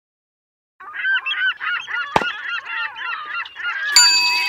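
A flock of birds calling in a dense chorus of many short, overlapping calls, starting suddenly about a second in. A single sharp click comes near the middle, and a ringing ding sounds at the very end.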